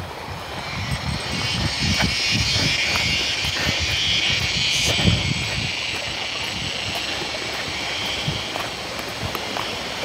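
Walking noise on a wet dirt path: irregular low rumbling and scuffing from footsteps and a handheld microphone on the move, with scattered small clicks. A steady high hiss runs underneath and swells in the middle.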